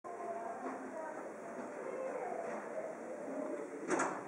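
Indistinct, muffled voices talking, with no words clear. A single sharp click comes just before the end and is the loudest moment.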